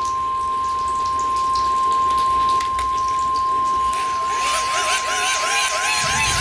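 Hand-crank emergency weather radio giving a steady high beep. About four seconds in, a warbling, siren-like chirp joins it, repeating about two and a half times a second.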